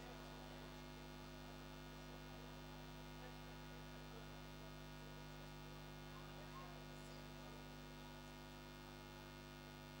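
Faint, steady electrical mains hum, a low buzz that runs unchanged, from the band's sound system while nothing is playing.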